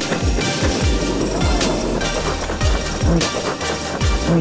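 Background music with a steady bass-drum beat.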